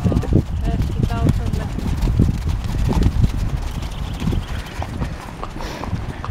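Hooves of several horses clopping on a dirt track as they pass, with people talking over them.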